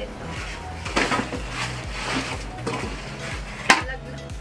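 Rustling and crinkling of packing material as a clear acrylic makeup organizer is unwrapped, with hard plastic knocking. A single sharp click near the end is the loudest sound.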